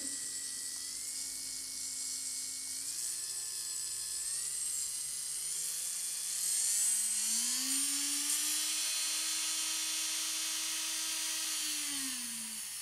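Kupa Upower 200 electric nail drill running free with a sanding band bit. Its motor whine rises in steps as the speed is turned up, then climbs smoothly to a steady high whine, and drops near the end as the speed is turned back down.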